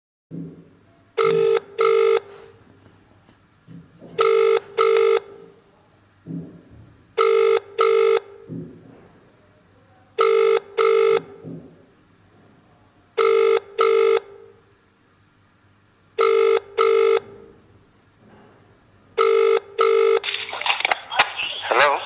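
British telephone ringing tone heard down the line by the caller: seven double rings, one pair every three seconds, until the call is answered near the end.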